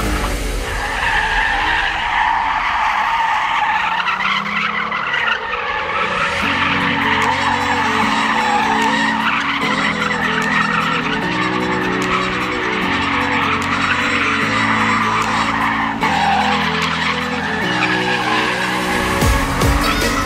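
Car tyres squealing through a long, continuous drift on asphalt, wavering in pitch as the car slides, with backing music carrying a stepping bass line.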